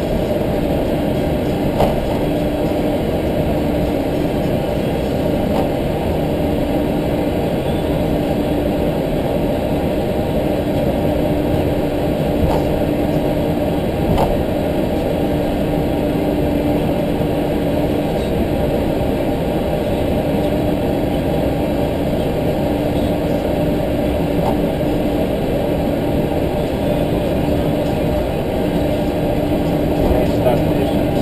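Steady cockpit noise of an Airbus A320-family airliner taxiing with its engines at idle, heard from the flight deck. A low hum comes and goes every few seconds, and there are a few faint clicks.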